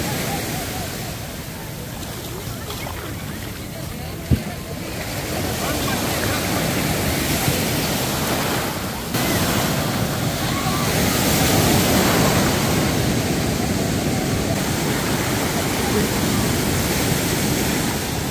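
Surf breaking and washing over the sand, with wind on the microphone and voices in the background. A single sharp knock comes a little over four seconds in, and the sound changes abruptly about nine seconds in.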